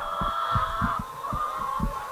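A flock of laying hens murmuring and clucking, over soft low thumps of footsteps on wood-chip bedding, several a second.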